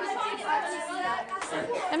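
Background chatter of several children's voices talking over one another in a classroom; no other distinct sound.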